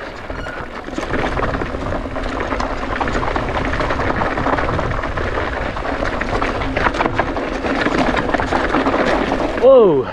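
Mountain bike rolling fast downhill over a loose, rocky dirt trail: a steady rush of wind on the action-camera microphone with tyre crunch and small knocks and rattles from the bike over rocks. Near the end a short vocal exclamation from the rider, his pitch dropping and rising, at a loose patch.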